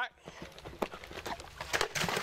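Hoofbeats of a horse coming in to a water jump: scattered thuds, with a cluster of louder hits near the end.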